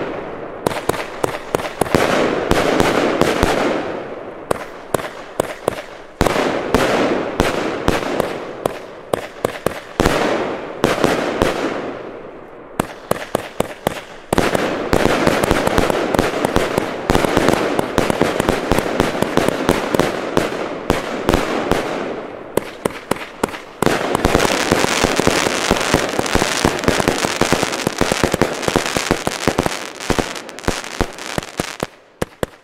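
Lesli Scissorman firework compound battery firing: a continuous run of shots bursting in the air, with dense crackling and popping from its strobe (Blinker) stars. The volleys come in waves, each starting loud and tailing off before the next.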